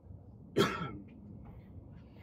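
A single short, sharp cough about half a second in, over a low steady background rumble.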